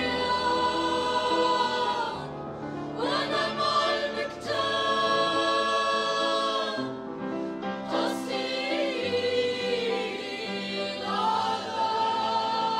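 Mixed choir of men, women and children singing in harmony, holding long chords in several phrases with short breaks between them.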